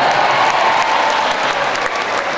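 Audience applauding, with many hands clapping at once and a murmur of crowd voices underneath.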